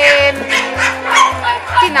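Small dogs, Shih Tzus, yipping and barking over background music with a steady bass beat.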